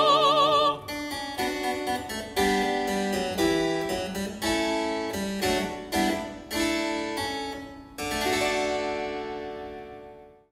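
A held operatic sung note with vibrato breaks off just under a second in. A harpsichord continuo then plays a run of plucked chords, each struck sharply and fading, and the last chord rings out near the end.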